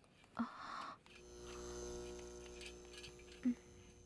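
A faint steady hum of several held tones that swells and fades, preceded by a brief hiss about half a second in and broken by a soft knock near the end.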